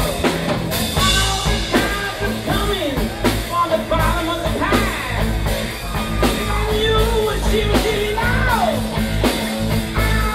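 Live rock band playing: electric guitars over a drum kit, with pitch-bending melodic lines.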